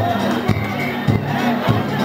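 Danjiri float's festival drum struck at a steady beat, just under two strikes a second, over a crowd of pullers shouting and chanting.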